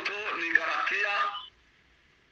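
Speech: one voice talking, heard with the narrow sound of an online-call line, stopping about a second and a half in.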